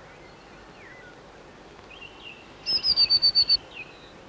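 A small tit of the chickadee family calling from the nest box: a few soft chirps, then, just before the end, a rapid run of about seven loud, high notes lasting under a second.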